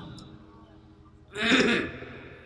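A man clearing his throat once close to a microphone, a short burst about one and a half seconds in after a brief lull.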